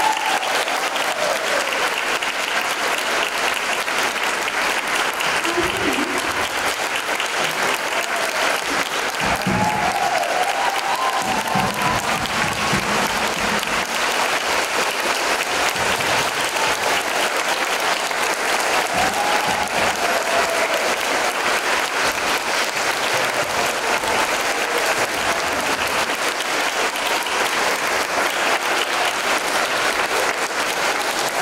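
A large crowd of schoolchildren clapping steadily and without a break, with scattered voices shouting and cheering over the applause.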